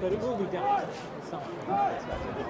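Faint voices in the background over outdoor ambience, with short snatches of speech but no clear words.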